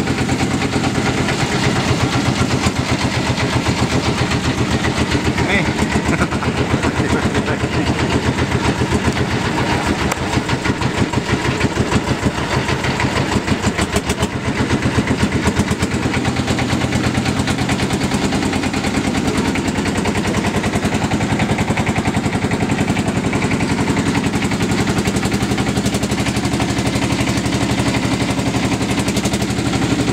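Engine of a klotok riverboat running under way, a rapid, even put-put knocking that carries on steadily, the noise the boat is named for.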